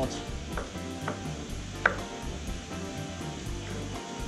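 A few sharp clicks of a knife on a wooden cutting board as green papaya is cut and handled, over quiet background music.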